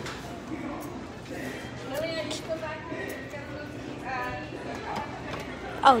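Indistinct background voices, with short snatches of talk about two and four seconds in.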